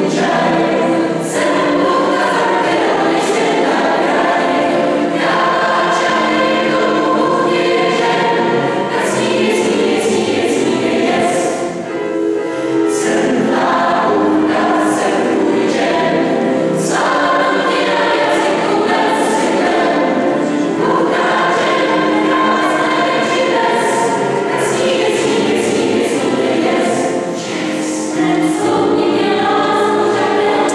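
Mixed choir of women's and men's voices singing in parts, with brief breaks between phrases about twelve seconds in and again near the end.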